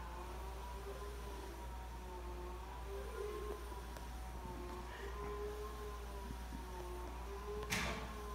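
The electric motor of a motorised zebra (combi) roller blind running as the blind lowers: a steady hum with a slightly wavering higher whine. There is one sharp click near the end.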